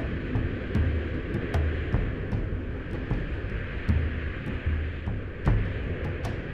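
Steady wind-like rushing, a sound effect for a magical fog rolling in, laid over background music with a deep drum beat about every three-quarters of a second.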